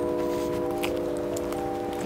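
Background music: a held, chime-like chord of several steady tones, with a higher note sounding briefly in the first second.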